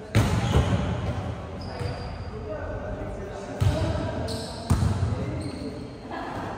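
A volleyball being struck during a rally: about four sharp hits of hands and arms on the ball, echoing in a large gym hall.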